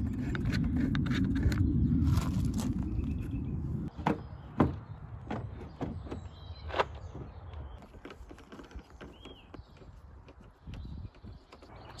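A steady low rumble that stops abruptly about four seconds in. Then a handful of sharp plastic knocks and clicks, growing fainter, as a car's plastic rear bumper cover is pushed and snapped into place on the body.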